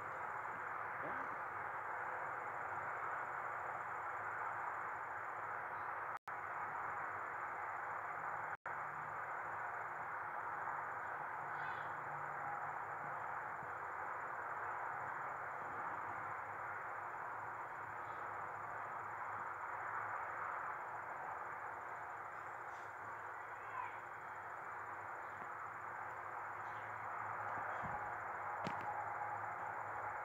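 Steady hiss of static with a faint high whine above it. It cuts out for an instant twice, at about six and nine seconds in.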